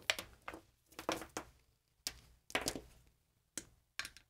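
Quarter-inch instrument cable being handled and its jack plug pushed into a guitar pedal's input: a series of about seven light knocks and clicks as plug and cable strike the desk and the pedal's metal case.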